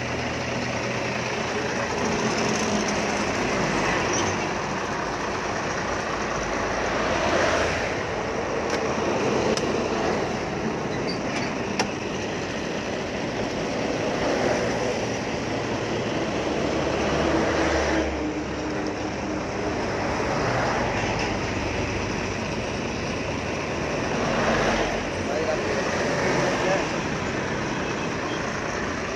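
Road traffic with trucks and cars going by, the noise swelling several times as vehicles pass.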